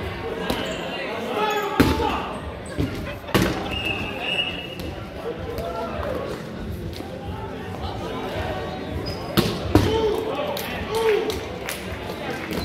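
8.5-inch rubber dodgeballs smacking and bouncing on a wooden gym floor and off players, with sharp hits near 2 and 3.5 seconds and a pair near the end. Players shout and call out throughout, all echoing in a large hall.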